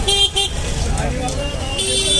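A vehicle horn gives one steady honk, starting near the end and lasting most of a second, over the voices of a busy street market.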